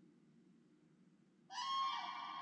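A faint low hum, then about a second and a half in a bright ringing tone sets in suddenly, many steady pitches sounding together like a struck bell, and rings on.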